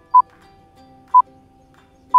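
Countdown timer beeping: two short, clear electronic beeps a second apart, over faint background music.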